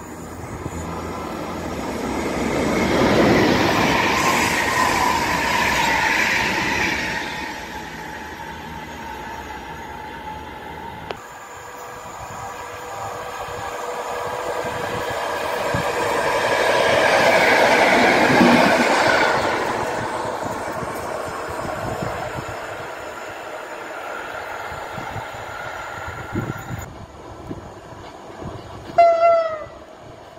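Two electric trains pass in turn, each rising to a peak and fading: a Siemens EU44 electric locomotive, then an EN57AL electric multiple unit running on the rails. A brief horn note sounds near the end.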